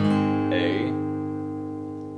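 Acoustic guitar, tuned down a half step, strummed once on an A-shape chord and left to ring, fading slowly.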